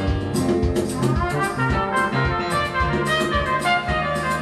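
Recorded music played back from a CD player over loudspeakers in a room: an instrumental passage of a jazz song, with a steady beat.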